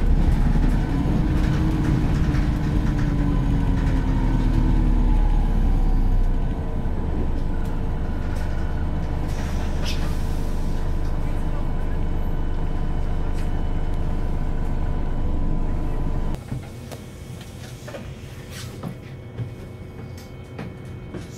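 Volvo B5LH hybrid bus running, heard from the upper deck: a deep engine rumble and a whine whose pitch rises then falls in the first few seconds, then a steadier run. About sixteen seconds in the rumble and a steady whine cut off suddenly, leaving a much quieter hum, typical of the hybrid's diesel engine stopping.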